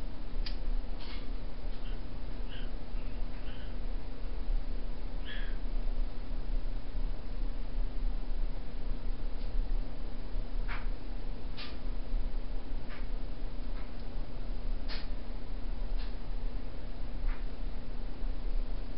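Short, soft pops and smacks of someone drawing on a tobacco pipe to light and smoke it, coming every second or few. Underneath is a steady hum from a room fan.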